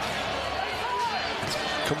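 A basketball dribbled on a hardwood court, with a few sharp knocks in the second half, over steady arena crowd noise.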